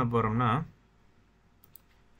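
A man's voice for the first half-second, then near quiet with two faint clicks about a second and a half in, typical of a computer mouse being clicked.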